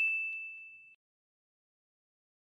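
A bright single-note bell 'ding' sound effect for the notification-bell click of a subscribe-button animation, ringing in one clear tone and fading away about a second in.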